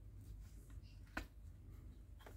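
Faint handling of a scale-model motorcycle wheel being worked into its tyre by hand, with one faint click about a second in, over a low steady room hum.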